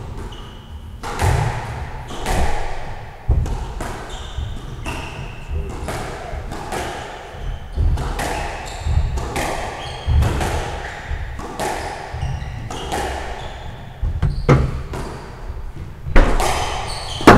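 A squash rally: the ball struck by rackets and smacking off the court walls about once a second, each hit ringing in the enclosed court, with shoes squeaking on the wooden floor between shots.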